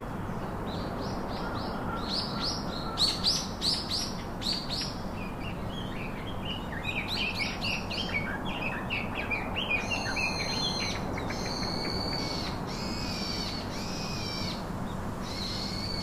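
Birds calling: quick runs of short, high chirps over the first half, then a series of longer, evenly pitched calls, each lasting about half a second, in the second half.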